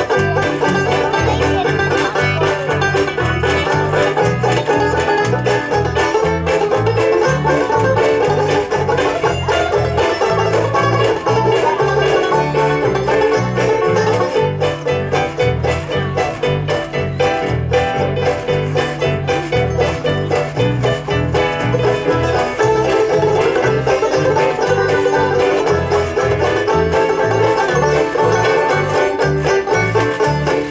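A banjo band playing the instrumental introduction to a song: several banjos strummed together over an electric bass guitar line and washboard rhythm, steady and loud with no singing.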